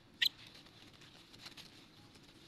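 A young monkey gives one short, high squeak about a quarter second in, while monkeys scuffle in dry leaves with faint rustling.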